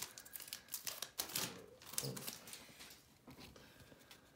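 Quick clicks and rustles of trading cards being slid out of a torn foil pack and squared up in the hand, busiest at first and thinning out toward the end.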